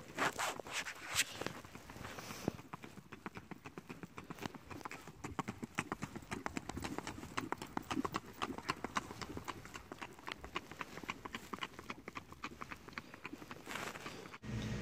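Shod horse's hooves striking a hard-surfaced lane in the rack, an even lateral four-beat gait, giving a quick, steady run of hoofbeats.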